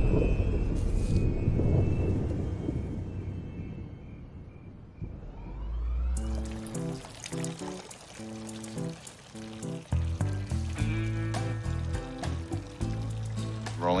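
A low rumble dies away over the first few seconds. About six seconds in, music starts over the splashing of two urine streams pouring into a fountain's water.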